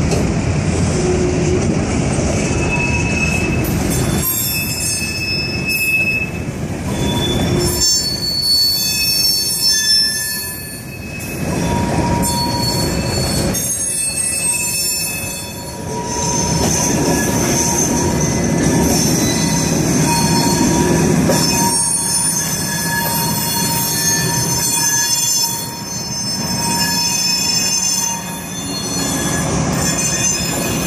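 Freight cars rolling slowly past at close range: a steady rumble of wheels on rail with metal wheels squealing in shifting high tones that come and go throughout.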